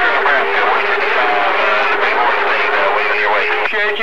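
Voices coming through a CB radio receiver, speech over the air that stays hard to make out, with a steady low tone under it that stops near the end.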